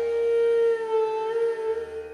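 Indian bamboo flute (bansuri) holding one long, breathy note that fades near the end, over a faint low drone.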